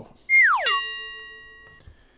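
A cartoon-style comedy sound effect: a quick whistle-like tone sliding steeply down in pitch, then a bell-like ding that rings out and fades over about a second.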